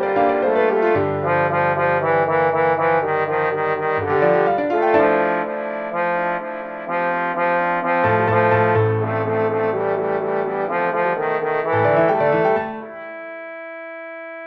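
Synthesized MIDI playback of a men's four-part chorus arrangement of a Japanese folk song, with the voice parts played on sustained synthetic instrument sounds over busy accompaniment. About a second before the end the moving notes stop and a held chord rings on.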